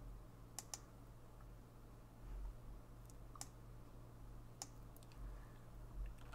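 A few faint computer mouse clicks: a close pair under a second in, then single clicks later, over a low steady hum.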